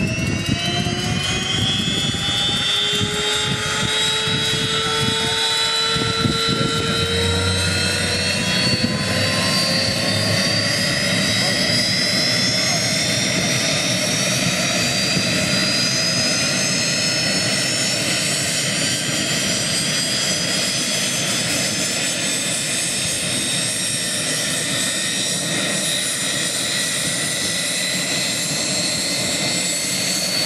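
Messerschmitt Me 262 reproduction's twin turbojet engines spooling up: a high whine rising in pitch over the first ten seconds or so, then holding steady over a loud, even jet roar.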